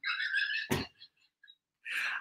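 A man's high-pitched, squeaky, suppressed laugh, then a short sharp breath about three-quarters of a second in and a brief pause.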